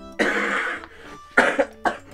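A man coughing: one long cough just after the start, then two short, sharp coughs in the second half.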